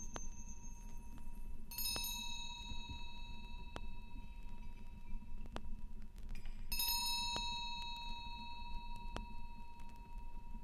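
A metal chime struck twice, about two seconds in and again near seven seconds, each strike ringing on with several high overtones. Under it runs the low surface noise of a vinyl record, with a faint click repeating about every two seconds, once per turn of the LP.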